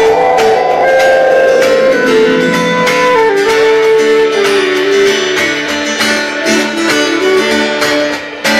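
Psychedelic space-rock band playing live: an instrumental passage with guitar and sustained held notes, one tone sliding slowly downward in pitch over the first few seconds.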